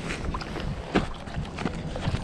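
Wind rumbling on the microphone, with a few scattered sharp clicks and knocks, the loudest about a second in.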